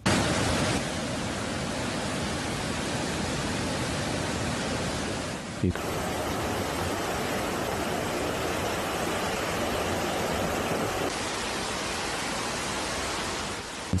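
Fast-flowing floodwater rushing through a street, a dense steady rush of water. There is a brief knock about six seconds in.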